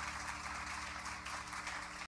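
Audience applauding in a small club, with a low steady hum underneath.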